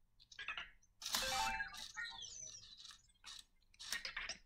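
Anki Vector robot making soft electronic chirps and beeps, with small motor whirring, as it lowers its lift arm and turns to face forward. This is its response to being told to turn its volume down. There is a short sound about a third of a second in, the main run of chirps from about one to three seconds, and a brief sound near the end.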